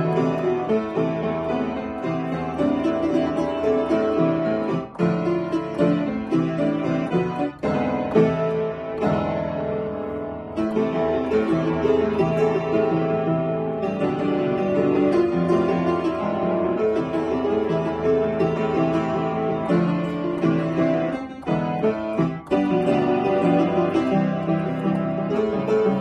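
Solo piano playing an A-minor piece, a melody over a moving accompaniment, with a few brief breaks between phrases.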